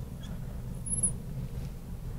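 Marker writing on a glass lightboard, with a brief high squeak of the tip on the glass about a second in, over a steady low hum.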